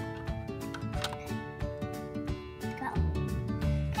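Background music with sustained notes, over a few light clicks from plastic toy pieces being handled.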